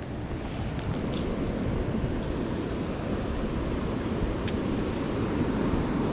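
Steady rush of river water pouring over a dam spillway.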